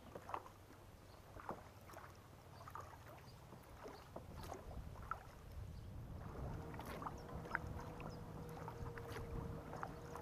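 Kayak paddle strokes in calm canal water: irregular light splashes and drips as the blades dip in and lift out. A low steady hum joins at about six and a half seconds.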